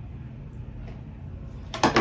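Low steady hum of a quiet room, then near the end a short sharp knock as a flat iron is put down.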